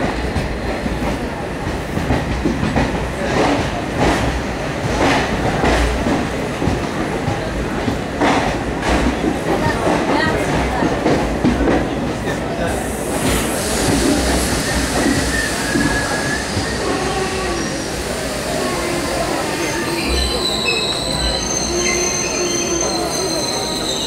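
Passenger train coaches heard from on board as they run into a station: wheels clack over rail joints and points for the first half. From about halfway through, a high wheel squeal with several steady tones sets in as the train slows.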